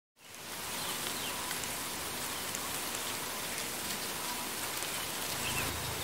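Steady outdoor rice-paddy ambience: an even hiss that fades in at the start, with a few faint short chirps over it. A low hum comes in near the end.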